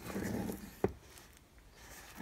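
Hands handling a hard card slipcover box set holding two plastic Blu-ray cases: a soft rubbing rustle, then a single sharp click a little before halfway through.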